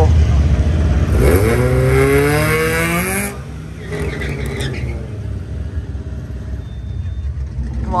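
Drag-strip launch. A supercharged car and a pickup truck run with a low engine rumble, then from about a second in an engine note rises steadily in pitch for about two seconds. It breaks off suddenly, and the sound drops and fades as the vehicles pull away down the track.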